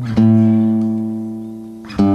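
Acoustic guitar chord struck once, ringing and slowly fading, with the next chord struck just before the end.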